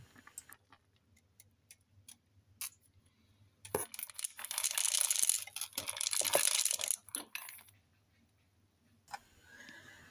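White chocolate drops poured from a bowl into a plastic blender cup, a rattling patter of many small clicks lasting about four seconds. It starts with a knock nearly four seconds in, after a near-silent start, and a few faint clicks come near the end.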